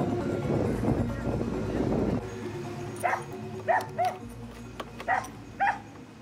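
A backing music track ends about two seconds in. A dog then barks five short times in two quick groups.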